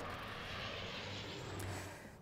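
Engines of a Canadair amphibious water-bombing aircraft flying low during a water drop, a steady noise that fades near the end.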